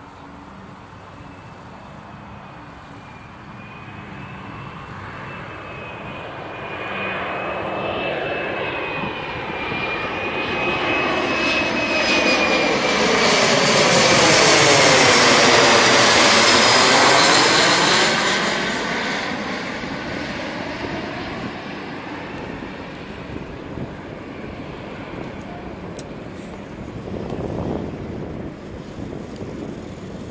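Embraer ERJ 170 jet on final approach with its gear down, its two GE CF34 turbofans passing low overhead. The jet noise grows from a distant rumble with a steady high fan whine, is loudest about halfway through as the aircraft goes over, then fades as it flies on towards the runway.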